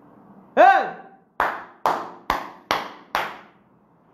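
A woman's single loud exclamation, its pitch rising then falling, followed by five sharp hand claps about half a second apart, clapped in shock.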